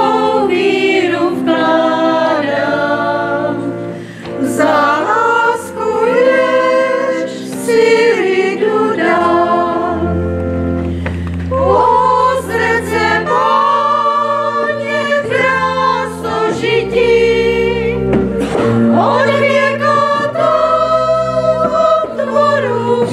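A small group of women singing a church hymn together in Czech, their voices moving through long sustained notes, with steady held low notes underneath.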